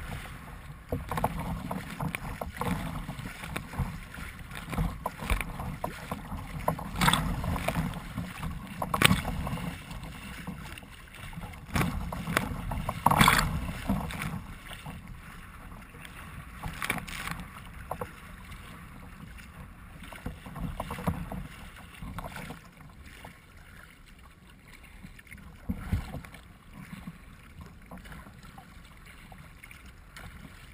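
Choppy water slapping and splashing against a kayak's bow as it moves through waves, with a low rumble of wind on the microphone. The splashes come irregularly and are loudest in the first half, where a few big ones burst over the bow.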